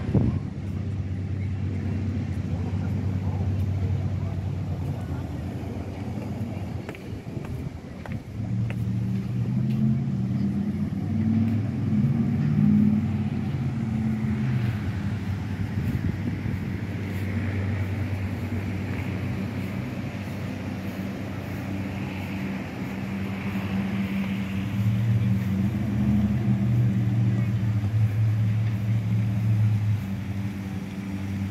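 A low, steady engine drone that swells about ten seconds in and again near the end, with voices in the background.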